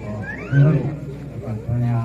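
A man talking into a handheld microphone.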